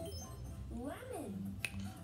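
A voice glides up and then down in pitch and settles into a short held low note, over a steady low hum, with a single sharp click near the end.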